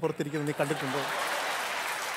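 Studio audience applauding, a steady patter that swells in under the end of a man's line in the first half-second and carries on evenly.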